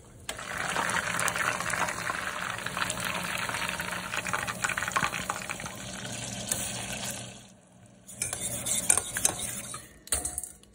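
Hot oil sizzling and crackling in a saucepan as battered chicken wings deep-fry. The sizzle dies away about seven and a half seconds in, and a shorter, brighter spell of sizzling with a few clicks follows near the end.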